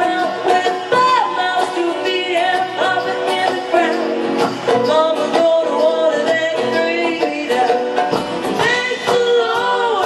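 Live folk-bluegrass band playing: a woman singing lead over banjo, acoustic guitar and a drum kit.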